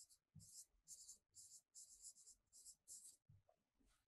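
Faint, quick strokes of a pen writing on a board, about seven or eight short scratches in a row as a word is written.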